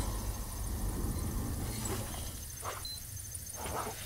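Sound-designed spaceship interior ambience: a steady low hum with faint, regularly pulsing high electronic tones and a couple of short beeps.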